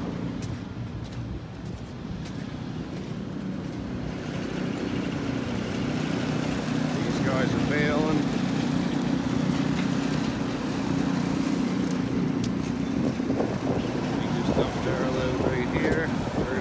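Vehicle engine running steadily at low speed, a low hum that grows a little louder from about four seconds in. Faint voices can be heard twice in the background.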